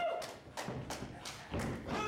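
Running footsteps thudding on a wrestling ring's canvas-covered boards as a wrestler runs toward the ropes: a quick, uneven series of thuds.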